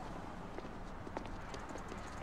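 Footsteps on a pavement sidewalk, a few scattered steps over a low, steady street hum. A faint, rapid, high ticking comes in near the end.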